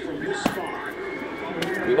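A sneaker is set on a shelf, with one sharp light knock about half a second in, over faint voices and shop background noise.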